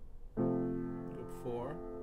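Piano chord, F major with C in the bass, struck about a third of a second in and left to ring.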